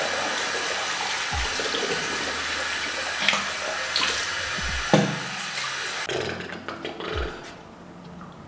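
Tap water running into a bathroom sink, with a few knocks during face-washing. The water cuts off about six seconds in, leaving a few small handling knocks.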